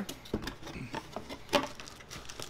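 Cardboard box and plastic packaging being handled: scattered light knocks and rustles, with one sharper knock about one and a half seconds in.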